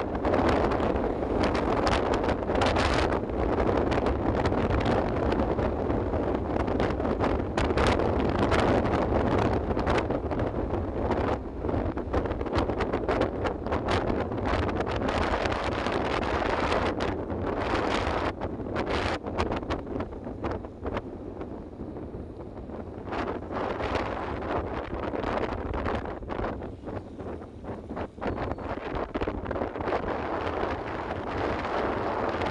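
Wind buffeting the microphone from a moving vehicle, over a steady rumble of road noise on a wet road. The buffeting eases somewhat in the second half.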